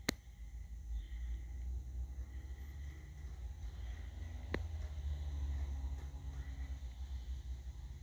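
Quiet room tone with a steady low rumble, broken by a sharp click at the very start and a fainter click about four and a half seconds in.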